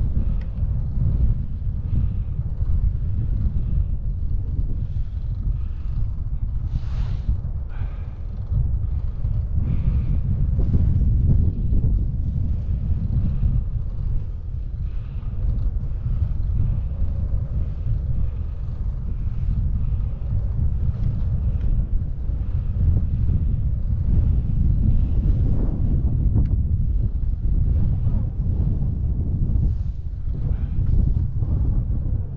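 Wind buffeting the microphone of a handlebar-mounted camera on a bicycle ridden into a headwind: a steady low rumble.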